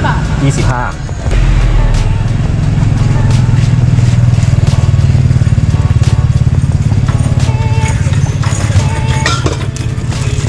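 A motorcycle engine running close by, a steady low rumble that grows louder about a second in, with voices in the background.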